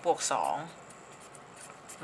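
One spoken word, then a felt-tip marker writing on paper in short, faint scratching strokes.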